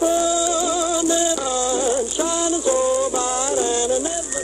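A male singer holding wavering notes with an orchestra, picked up off a 1940s radio broadcast and heard from a home-cut acetate 78 rpm disc, with steady surface hiss throughout.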